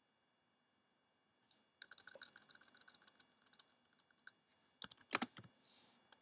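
Typing on a computer keyboard: a quick run of keystrokes starting about two seconds in, then a few louder clicks near the end, the loudest about five seconds in.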